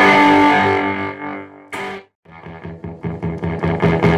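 Electric guitar played through a fuzz pedal built from Total Spack Vibes Right Now and Hair Of The Dog fuzz clones, giving a distorted, fuzzy tone. A chord rings out and fades for under two seconds, followed by a short stab, a brief silence, and then quick repeated picked notes that grow louder.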